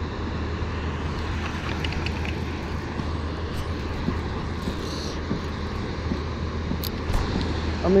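Steady low rumble of water pouring through the dam's open spillway gates, with one sharp click about seven seconds in.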